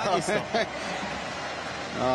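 Steady ice hockey arena noise: a broad, even wash of crowd and rink sound, with a few words of commentary at the very start.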